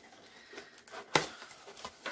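Faint handling sounds of a delivered package, with one sharp click a little over a second in.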